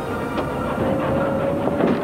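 An electric milk float driving by: its motor whine rises slowly in pitch as it gathers speed, over road noise and a few light rattles.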